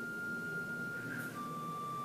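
A high, steady whistle-like pure tone held on one note, then stepping down to a slightly lower note a little over a second in.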